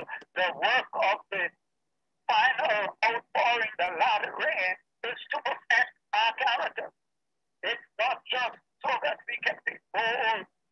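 Speech over a video call, a man's voice talking in short phrases, with the gaps between phrases cut to dead silence.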